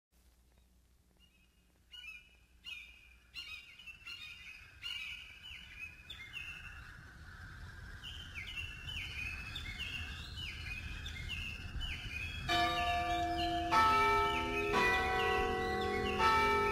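Birds chirping over a soft outdoor hiss, then a church bell starts tolling near the end, struck about once a second with long ringing overtones and louder than the birds.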